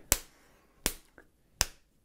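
A fist pounded into an open palm, beating time: three sharp smacks evenly spaced about three-quarters of a second apart.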